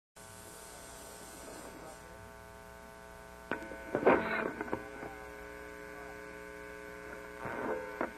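Steady electrical hum from a live band's stage amplification before the song starts, with a few short louder noises about three and a half, four and seven and a half seconds in.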